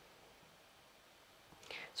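Near silence: faint room tone, with a woman starting to speak near the end.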